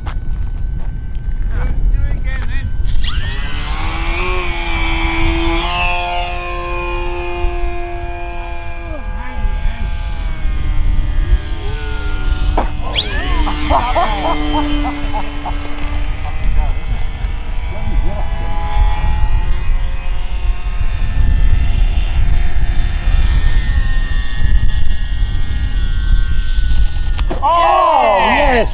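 Electric radio-controlled model planes flying, their motors and propellers whining with several steady tones that slide in pitch as the planes pass close, sharply about 3 s and 13 s in. Wind rumbles on the microphone throughout.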